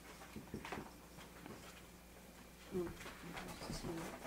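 Faint strokes of a marker writing on a whiteboard, with two short low tonal sounds near the end.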